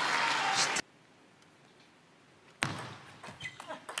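Loud crowd noise cuts off abruptly under a second in. After a near-silent gap, a table tennis ball gives a sharp knock near the end, followed by a few lighter clicks as it is struck and bounces in a rally.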